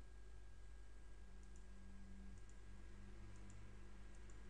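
A few faint computer mouse clicks at irregular intervals as checkboxes are unticked, over a low steady hum of room tone.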